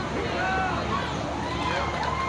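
Several voices calling out and shouting over a low background of crowd chatter, with a long, drawn-out call starting near the end.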